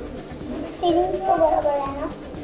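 A young child's voice speaking a short phrase, starting a little under a second in.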